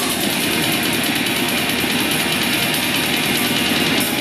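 Black metal band playing live: heavily distorted guitars and drums in a loud, dense, unbroken wall of sound.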